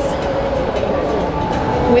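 Busy exhibition-hall ambience: steady background chatter of a crowd over a low, even rumble.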